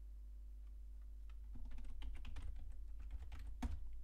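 Typing on a computer keyboard: a short run of keystrokes starting about a second and a half in, ending with one louder click, over a faint steady hum.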